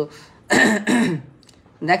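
A person clearing their throat once: a short, rough, noisy burst about half a second in.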